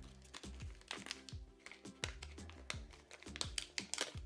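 Scissors snipping and a clear plastic packaging sleeve crinkling as it is cut open and a small tool is pulled out: a run of small, irregular clicks over soft background music.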